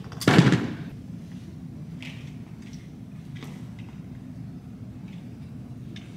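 A single heavy thud, as weight plates are set down onto the gym floor mat about half a second in, over a steady low background hum.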